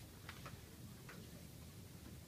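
Near silence over low room hum, with a few faint ticks from sheets of paper being handled on a tabletop.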